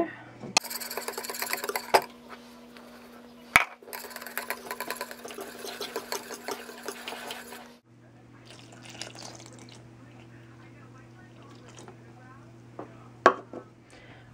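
A wire balloon whisk beating flour into eggs in a mixing bowl: a fast, dense scraping and clicking of the wires through the batter, with a few sharp knocks of the whisk against the bowl. The whisking is quieter over the second half.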